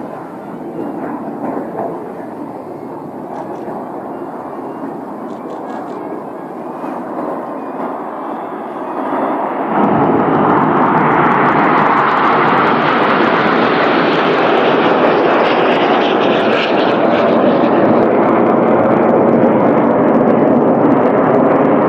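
Jet noise from the Red Arrows' BAE Hawk T1 jets flying a formation display, a steady rushing sound that grows much louder and brighter about halfway through as the jets come closer.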